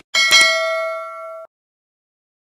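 Subscribe-button notification sound effect: a faint click, then a bright bell ding struck twice in quick succession that rings for about a second and cuts off abruptly.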